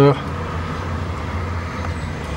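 Steady low background rumble with no distinct events, after the tail of a spoken word at the very start.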